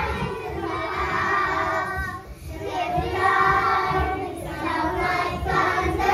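A group of young children singing a patriotic military service song together over a backing track, with a short break between phrases about two seconds in.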